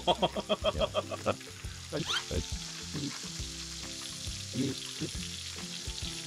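Pork belly sizzling on a cast-iron cauldron-lid (sotttukkeong) griddle, stirred with chopsticks, a steady frying hiss. A quick burst of laughter sounds over it in the first second or so.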